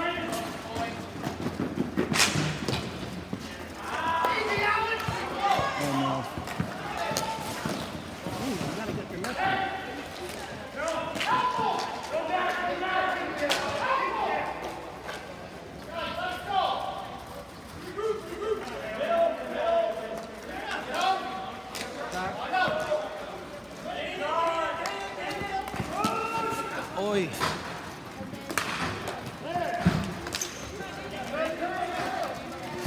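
Ball hockey in play: indistinct shouting and chatter from players and onlookers, broken by repeated sharp clacks and knocks of sticks hitting the plastic ball and the ball striking the boards.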